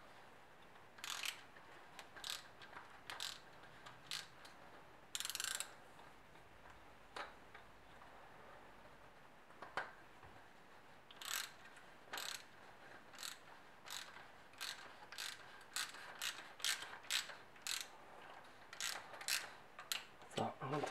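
Socket ratchet clicking as it spins a motorcycle fork's top cap onto the fork tube: a few scattered clicks at first, then a steady run of about two clicks a second over the second half.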